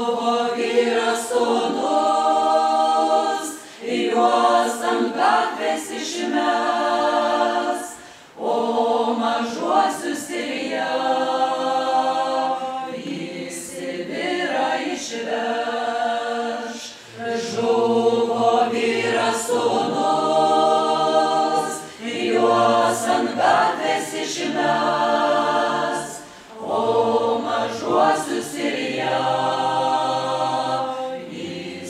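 A Lithuanian folklore ensemble singing a folk song as an unaccompanied choir, in sung phrases of a few seconds with short breaks for breath between them. Lower voices join in about halfway through.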